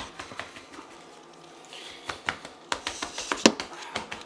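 Hands patting and pressing a rolled dough log against a wooden board: a run of soft taps and knocks, quiet for the first second or so, with the loudest knock about three and a half seconds in.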